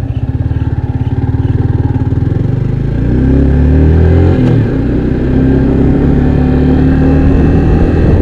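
Sport motorcycle engine pulling away from a standstill. It pulses at low revs for the first few seconds, then revs up with a rising note. There is a gear change about four and a half seconds in, after which it holds a steady, higher engine speed.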